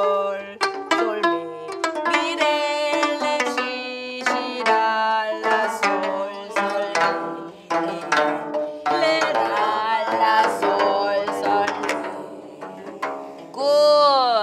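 Gayageum (Korean twelve-string zither) strings plucked note by note by a class playing together in a slow practice exercise, some notes bent and wavered by the left hand.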